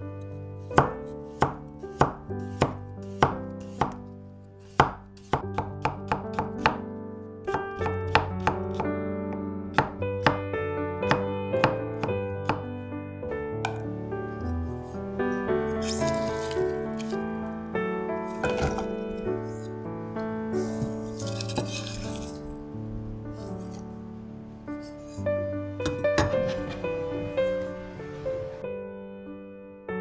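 Japanese kitchen knife slicing fresh baby ginger thin on a wooden cutting board, each stroke a sharp tap on the board. The strokes come about every half second at first, quicken a few seconds in, then grow softer and closer together. Soft piano music plays underneath.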